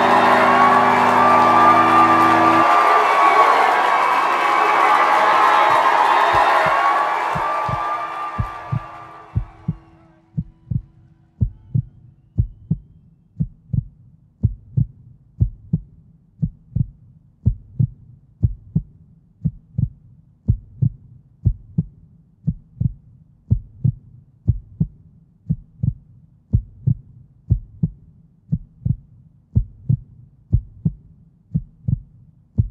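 A rock band's last chord rings out: the low notes stop under three seconds in, and the rest fades away by about ten seconds. Then a low thump repeats steadily in a heartbeat-like double pulse to the end.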